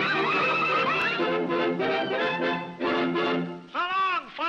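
Early-1930s cartoon orchestra playing the lively closing bars, with choppy chords that end on a held chord. Near the end a short sliding call rises and falls in pitch.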